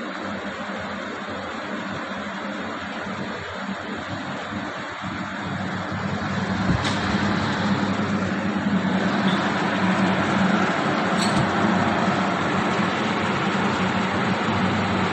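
Beer-can film wrapping and heat-shrink packaging machine running, a steady mechanical noise with a low hum that grows louder about six seconds in. A few short sharp clicks stand out over it.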